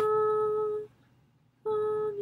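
A woman sight-singing a melody from a book, humming it: one held note of under a second, a short pause, then the next note at about the same pitch begins near the end.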